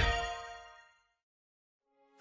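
The closing ringing hit of a short rock music sting, its bell-like tones fading away within about a second, then silence.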